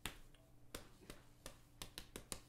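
A person's fingers snapping repeatedly and unevenly, about six sharp snaps in two seconds.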